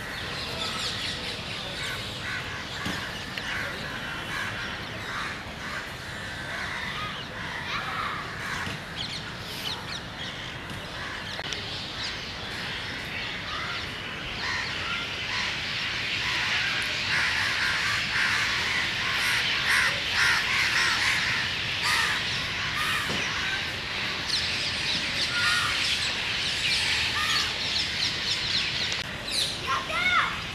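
Many birds calling at once in a dense, continuous chorus that grows louder about halfway through.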